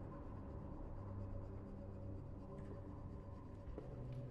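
A knife scraping across a slice of bread on a plate, a faint dry scratching, over a low steady drone.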